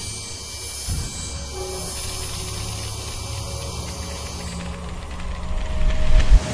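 Sound-design drone of a low electric hum under a high, shimmering hiss, swelling near the end.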